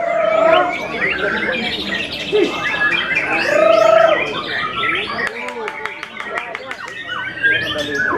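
White-rumped shama (murai batu) singing a fast, varied song of whistled glides, a rapid trill and sharp notes, with people talking in the background.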